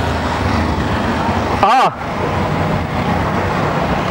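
Steady street traffic noise from passing and idling vehicles, with a brief wavering voice-like call a little under two seconds in.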